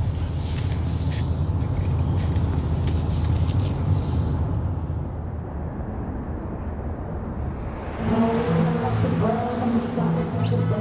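Low, steady road rumble inside a moving car's cabin, dropping away about halfway through to a quieter hum. Music with held notes comes in about two seconds before the end.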